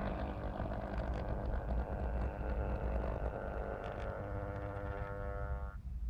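OO gauge model diesel multiple unit running into a platform: a low rumble of wheels on the track with a few light rail clicks, and a motor whine that sinks slightly in pitch as the train slows, then cuts off abruptly near the end as it stops.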